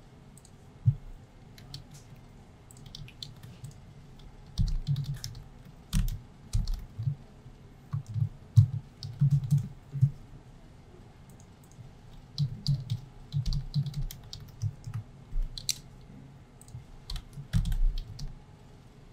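Typing on a computer keyboard: irregular bursts of keystrokes with short pauses between them.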